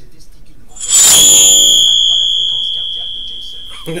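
A sudden loud, high-pitched ringing sound effect from the television, starting about a second in with a rush of noise and fading out over about three seconds.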